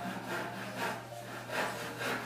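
Close-up chewing and wet mouth sounds as a forkful of sticky-rice suman is eaten, irregular, with a couple of louder smacks. A faint steady low hum lies underneath.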